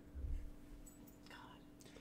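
Quiet pause: faint room tone with a steady low hum and a softly whispered word.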